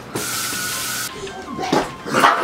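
A burst of hiss about a second long, with a steady tone under it, starting and stopping abruptly; a voice follows near the end.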